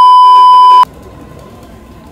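Television test-card tone used as an editing effect: a loud, steady beep that lasts about a second and cuts off suddenly, followed by faint outdoor background sound.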